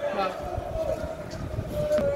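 Indistinct voices talking close by, over a steady pitched hum and scattered low thumps.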